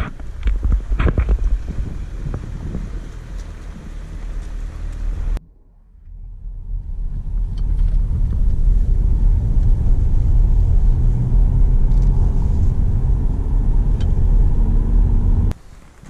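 Car driving on a rural road, heard from inside the cabin: a steady low rumble of engine and tyres. It drops away briefly about five seconds in, then returns louder and steady.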